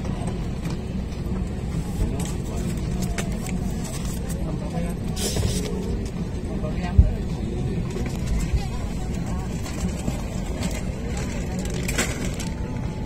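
Airliner cabin rumble while taxiing, a steady low drone of engines and airflow, with passengers talking faintly in the background. A single short thump sounds about seven seconds in.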